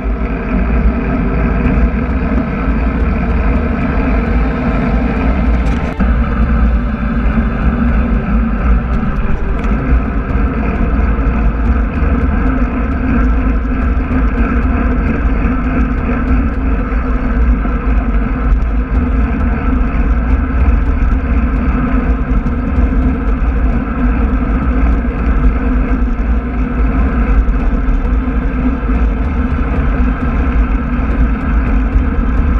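Steady wind noise on a handlebar-mounted action camera's microphone, heaviest in the low end, mixed with the hum of road-bike tyres rolling on asphalt at speed.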